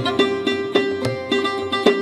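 Sarod playing a melody in quick plucked strokes, several notes a second, with tabla accompaniment giving low bass-drum tones.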